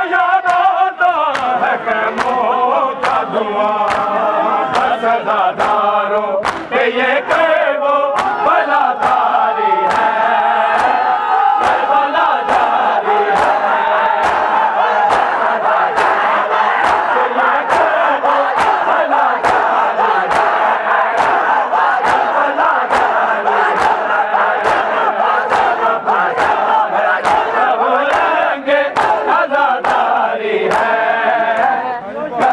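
A group of men chanting a mourning lament together while beating their bare chests in unison (matam), the hand slaps landing sharply and evenly about three times every two seconds.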